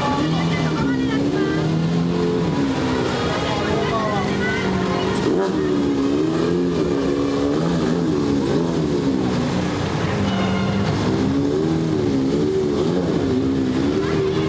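Lamborghini Murciélago V12 engine revving at low speed as the car pulls away and drives slowly forward. Its pitch rises and falls again and again with throttle blips.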